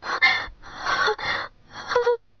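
A woman's heavy, breathy gasps: two long strained breaths, then a short voiced sound near the end.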